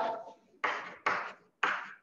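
Chalk writing on a chalkboard: three short scratchy strokes about half a second apart, each starting sharply and fading away.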